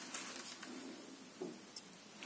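Faint rustle of a knitted wool sock being pulled and worked off a child's shoe by hand, growing quieter, with a small tap near the end.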